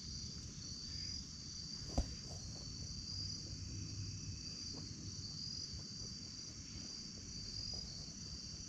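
Steady evening insect chorus, a continuous high, softly pulsing trill, over a low rumble, with a single sharp knock about two seconds in.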